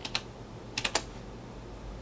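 Computer keyboard keys clicking as code is typed: two keystrokes right at the start and a quick group of three just under a second in.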